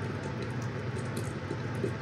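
Steady low background noise, an even hiss with a few faint ticks and no distinct event.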